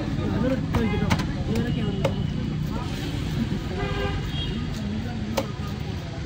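Road traffic with vehicle horns tooting twice, over a hubbub of voices, and a few sharp knocks of a large knife striking fish on a wooden chopping block.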